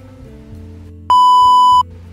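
An edited-in censor bleep: a loud, steady 1 kHz beep starting about a second in and lasting under a second, cutting off abruptly, over quiet background music.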